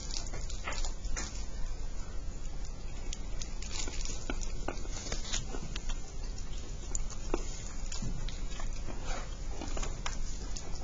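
Classroom background noise: scattered small clicks and knocks over a steady low hum, with a short falling squeak about eight seconds in.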